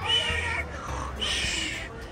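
Two high-pitched, meow-like voice cries about a second apart, each lasting about half a second.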